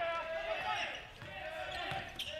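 A basketball being dribbled on a hardwood court, heard in a large arena.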